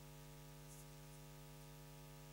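Near silence: a steady low electrical hum with faint static hiss.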